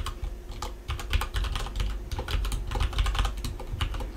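Computer keyboard being typed on: a quick, uneven run of key clicks, several a second.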